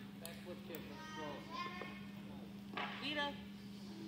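Voices talking, with a name called near the end, over a steady low hum.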